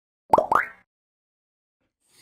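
Intro logo sound effect: two quick rising 'bloop' pops about a quarter of a second apart.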